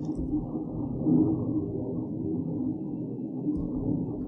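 A 3D printer running in the room: a steady low hum whose tones shift as its motors move, with a few faint keyboard taps.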